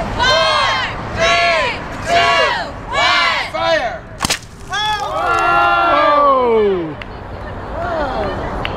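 A crowd of children chanting a countdown in unison, then a compressed-air bottle rocket blasting off the launcher with a single sharp crack about four seconds in. The crowd follows with a long falling 'whoa' as the rocket climbs.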